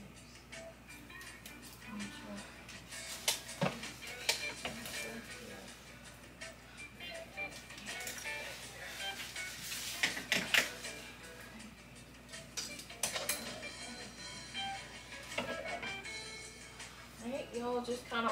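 Soft background music, with clothes hangers clacking against a wire closet rod several times as garments are moved and rehung; the loudest clacks come about ten seconds in.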